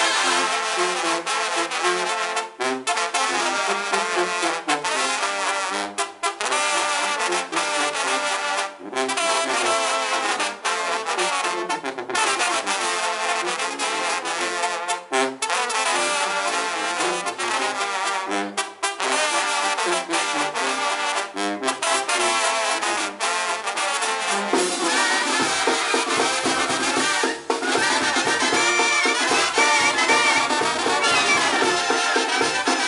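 Mexican banda brass band playing, trombones and trumpets leading in phrases with short breaks between them. From about 25 seconds in the sound grows fuller as low bass notes join.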